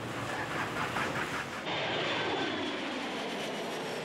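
Jet airliner taking off, its engines a steady rushing noise with a faint high whine; the sound changes abruptly about a second and a half in.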